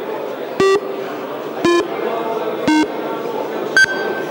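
Parliamentary electronic voting system counting down the last seconds of a roll-call vote: a short beep about once a second, each a little lower in pitch, then a higher final beep near the end as voting closes, over the murmur of the chamber.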